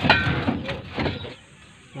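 Rusted owner-type jeep exhaust pipe clanking as it is grabbed and shaken by hand: one loud metallic clank with a short ring at the start, two lighter knocks within the first second, then quiet.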